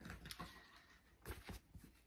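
Faint rustling and a few light knocks as a cross-stitch project on its fabric-covered frame is handled.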